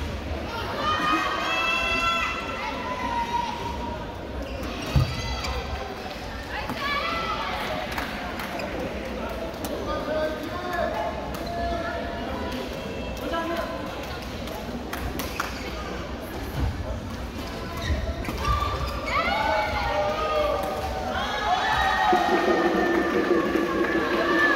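Voices and calls echoing in a large indoor badminton hall, louder near the end, with scattered sharp knocks of rackets striking shuttlecocks, one louder knock about five seconds in.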